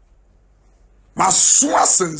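About a second of near silence, then a man's voice bursts out loud and hoarse, with strong breath noise.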